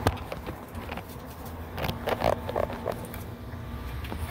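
Inside a moving van's cabin: steady low engine and road rumble, with scattered clicks and rattles and a brief cluster of short mid-pitched sounds about two seconds in.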